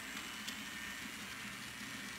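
Two MTB SW1200 TT scale model locomotives running with their freight trains on the oval tracks: a faint, steady mechanical whirr of small motors and wheels on rail. The one on the outer track runs a bit noisy, from a cause its owner is not sure of.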